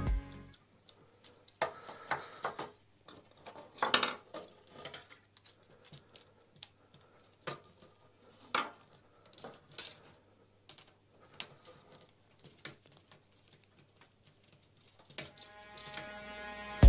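Scattered light metallic clinks and taps, several a second and uneven, from a spanner and screwdriver working the mounting bolts of a headlight guard by hand.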